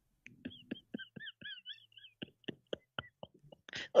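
An odd inserted sound effect: a string of irregular clicks with a high, warbling chirp running over them for about three seconds.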